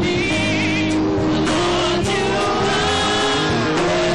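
Live church praise-and-worship music: instruments playing with voices singing along, held notes wavering over a steady accompaniment.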